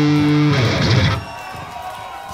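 Live metal band's electric guitars and bass holding a final chord through the PA, which is cut off about half a second in and rings out, leaving a much quieter background: the end of a song.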